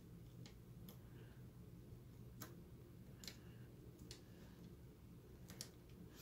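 A handful of faint, irregular small clicks as a socketed BIOS chip's pins are pressed down into its motherboard socket a little at a time, over a quiet low hum.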